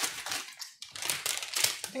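Snack-chip bags crinkling in irregular rustles as they are handled and reached into, with a brief quiet moment a little before the middle.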